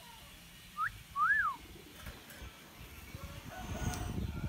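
Hill myna whistling twice about a second in: a short rising note, then a longer, louder note that rises and falls.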